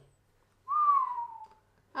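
A person whistling a single note that rises slightly and then slides down in pitch, lasting about a second.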